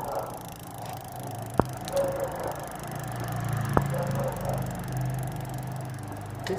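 A bicycle's Shimano Tourney 7-speed drivetrain being turned by hand: the chain runs over the cassette and through the rear derailleur while the rear wheel spins, with a steady low drone. Two sharp clicks come about two seconds apart.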